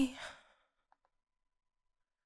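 Mostly silence: only the trailing end of a woman's softly spoken "let's see", drawn out into a brief hum, in the first moment.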